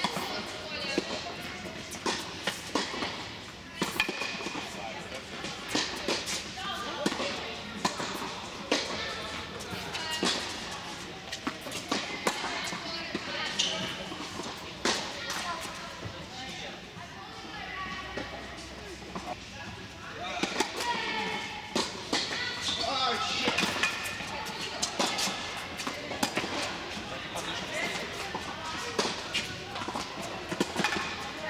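Tennis balls struck by rackets and bouncing on a hard indoor court, a scatter of sharp hits that echo around a large hall, with indistinct voices in the background.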